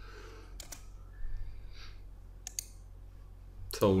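A few light computer keystrokes, two quick pairs of clicks, as a new number is typed into a settings field.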